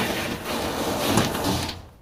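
Steady, noisy mechanical whirring from the potato-powered door mechanism switching on once the circuit is closed, fading out near the end.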